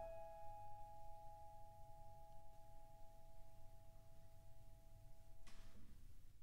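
The last piano notes ringing on quietly after the final chord, two steady tones slowly fading, then cut off near the end just after a soft brief noise.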